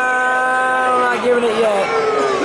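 A long drawn-out shout held on one pitch for about two seconds, ending about a second in, then more shouting voices.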